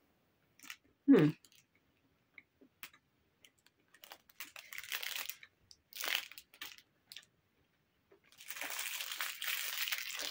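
Crunchy foil-wrapped chocolate being bitten and chewed close up: short crunches in the middle and a longer stretch of crunching near the end, after a brief voiced "mm" about a second in.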